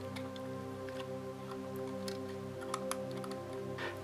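Soft background music with steady held notes, with a few faint light clicks of small plastic parts as a model railway coach's step boards are handled and pressed into place.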